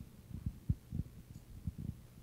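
Handling noise from a handheld microphone being moved and set down: a string of irregular low thumps and rumbles.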